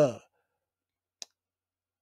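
A pause in a man's speech, broken by a single short, sharp click about a second in.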